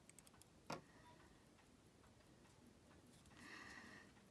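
Near silence with a few faint small clicks, one sharper just under a second in, from handling an open wristwatch case and its automatic movement.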